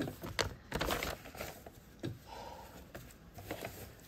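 Printed foundation paper and cotton fabric rustling and brushing under the hands as a paper-pieced quilt block is handled and smoothed flat, in a few short, irregular rustles and soft taps.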